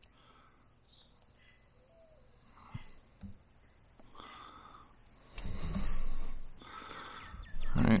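A whittling knife cutting into a stick for a V cut: a rasping slice about a second and a half long, past the middle, after two faint clicks. Birds chirp faintly.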